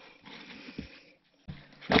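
Faint handling noise of soggy cardboard being laid and pressed into a plastic tub, with a brief pause. About a second and a half in comes a short, low breathy hum.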